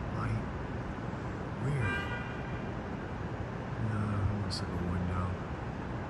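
Steady city traffic noise, with a short pitched tone about two seconds in and a low steady hum in the middle seconds.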